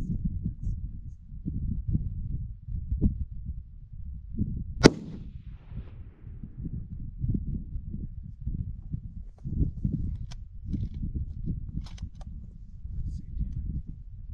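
A single rifle shot about five seconds in: one sharp crack with a short tail of echo off the surrounding terrain. Steady wind rumble buffets the microphone throughout.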